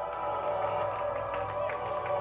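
Electric guitar run through effects pedals, sounding a sustained layered drone of steady tones with an occasional sliding pitch, with no drums.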